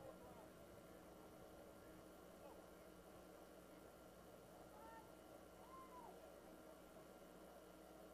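Near silence: faint open-air field ambience, with a few faint, short distant calls that come and go.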